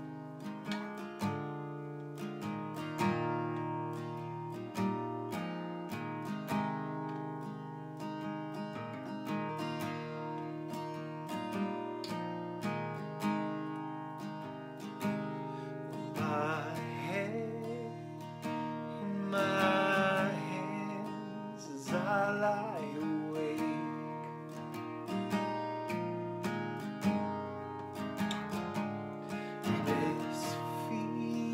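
Steel-string acoustic guitar strummed in a steady rhythm, playing a song's opening. A man's voice sings a few phrases over it in the middle stretch.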